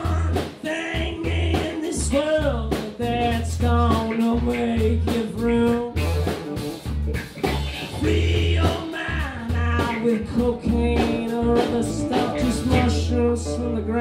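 Live roots-rock band playing: a man sings over strummed acoustic guitar, with bass and drums keeping a steady beat.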